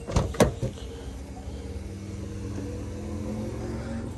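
Driver's door of a Toyota GR Yaris opened by its handle: two sharp latch clicks in the first half-second as it unlatches and swings open, followed by a steady low hum.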